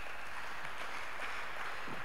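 Congregation applauding steadily, a hall full of hands clapping.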